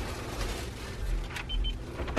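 Hotel room's electronic key-card door lock giving two short high beeps about one and a half seconds in, just after a click, as it reads the card and lights green to unlock. A low rumble runs underneath.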